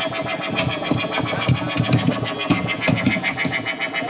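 A noise band playing live: a dense, harsh wall of amplified noise and effects with a fast pulsing texture and scattered sharp hits.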